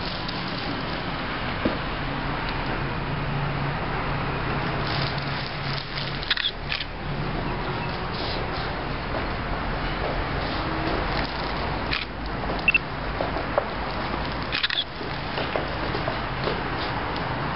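Steady background noise with a faint low hum, broken by a few short clicks and knocks.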